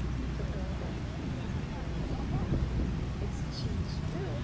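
Faint, indistinct voices over a steady low rumble of wind on the microphone, with a few short high chirps near the end.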